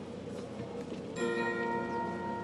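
A bell-like chime is struck about a second in and rings on with several clear tones, over steady background noise.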